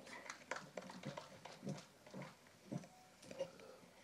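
Faint, scattered small knocks and rustles in a quiet hall, the handling and movement noise of someone stepping up to a podium and taking hold of its microphone.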